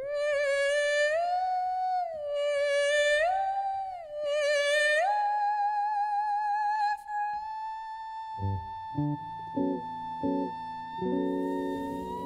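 Female jazz vocalist singing a wordless closing cadenza, sliding up through several notes with vibrato and then holding one long high note. About eight seconds in, the band answers with short chord hits and then a held final chord beneath the voice.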